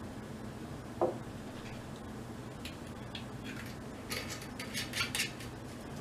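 Glass bottle and shot glasses handled on a wooden table: one dull knock about a second in, then a run of light glassy clinks and taps over the last three seconds.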